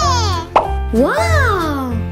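High-pitched cartoon character voices making wordless, gliding exclamations over upbeat children's background music with a steady bass line. A short pop sound effect cuts in a little over a quarter of the way through.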